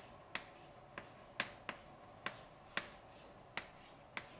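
Chalk tapping and knocking against a blackboard as an equation is written: about eight sharp taps, unevenly spaced.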